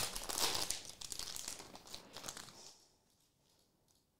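Foil wrapper of a Marvel Annual trading card pack crinkling and tearing as it is pulled open by hand; the crinkling dies away near the three-second mark.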